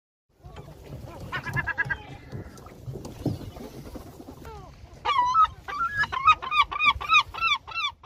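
A bird calling in a long series of arched, honking notes that starts about five seconds in and speeds up to about four calls a second, over a low steady rumble.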